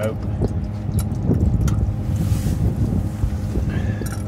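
Hands working a plastic union nut on hot tub heater plumbing loose, with irregular clattering and scraping, over a steady low hum and wind on the microphone.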